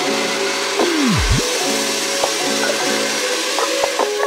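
An 1800-watt hand-held hair dryer blowing steadily while rough-drying wet hair, under background music with a beat and a deep swooping drop effect about a second in.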